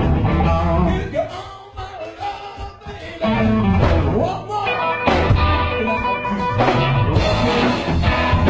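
Live blues-rock band playing, with electric guitars, bass and drums and notes that bend and slide in pitch. The music starts abruptly and gets louder about three seconds in.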